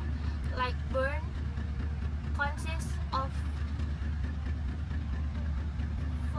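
A young woman's voice speaking in short phrases during the first half, over a steady low rumble.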